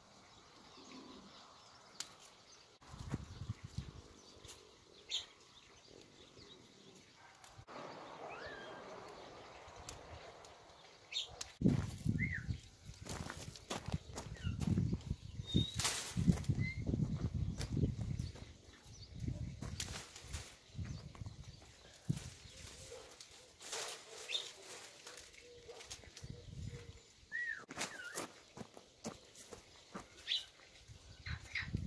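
Cane reed screening and a wire cage being handled: scattered clicks and rustling at first, then heavier knocks and rattling from about 11 to 19 seconds in as the cane is lifted onto the cage top.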